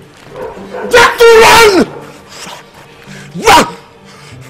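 Two loud cries over background music: a long one about a second in whose pitch falls at the end, and a short one near the end.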